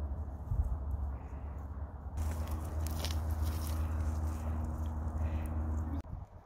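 A cat crunching and chewing kitchen scraps from a tin plate, a rapid run of small crisp bites that starts about two seconds in. Before that, wind rumbles on the microphone.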